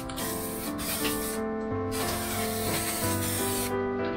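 Aerosol spray paint can hissing in three bursts, the last and longest lasting nearly two seconds, over background music.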